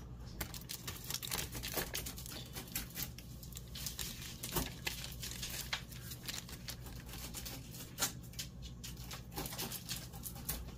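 Hot milk near the boil in a cast iron skillet, popping and crackling irregularly around a block of cream cheese, with a few louder pops. A low steady hum runs underneath.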